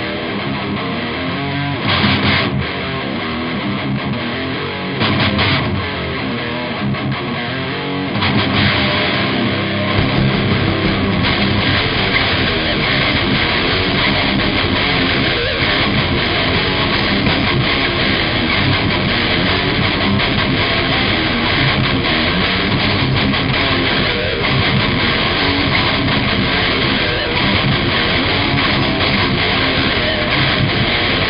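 Heavy metal band playing live through amplifiers: distorted electric guitar and drums. The band comes in louder and heavier, with more bass, about eight to ten seconds in.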